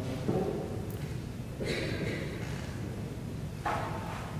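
Pause in a large hall: a low steady room hum with a few faint, brief shuffles and rustles of people moving and settling, one just after the start, one about a second and a half in and one near the end.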